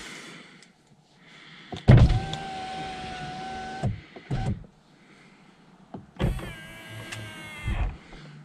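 The BMW M4 coupe's electric driver's-door window motor runs twice, each time for about two seconds with a steady whine. Each run starts with a thump and ends with one as the glass reaches its stop.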